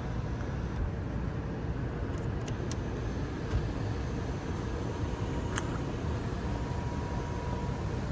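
Steady low rumble and hiss inside a parked car's cabin with the engine idling and the sunroof open, with a few faint clicks and a faint steady tone in the last few seconds.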